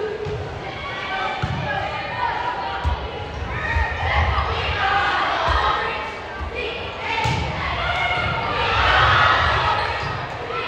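Indoor volleyball rally on a hardwood gym court: thuds of the ball and players' feet, with a sharp hit about seven seconds in, under crowd chatter and shouts that swell twice, echoing in the large hall.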